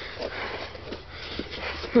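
A person breathing and sniffing through the nose close to the microphone, a few short soft breaths, with faint light knocks from handling a plastic radio case.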